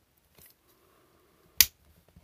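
One sharp click about one and a half seconds in, from Knipex side cutters working at the plastic housing of a disposable electrosurgery pen, over faint handling noise.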